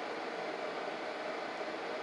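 Steady, even hiss of a window air-conditioning unit running, with nothing else standing out.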